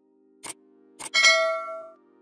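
Subscribe-button animation sound effects: two short clicks about half a second apart, then a bright bell-like chime that rings out and fades within a second. A faint low held chord sits underneath.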